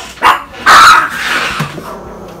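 Small dogs barking, worked up by someone coming into the room: a short bark, then a louder, longer one well before the end.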